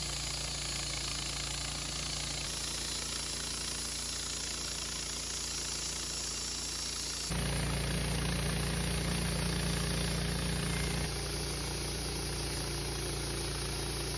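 Wood-Mizer LT15 Start bandsaw mill running steadily while its band blade saws lengthwise through a Douglas fir log. The sound jumps louder about seven seconds in and settles back slightly a few seconds later.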